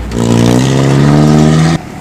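A motor vehicle's engine accelerating, its pitch rising steadily for about a second and a half, then stopping abruptly near the end.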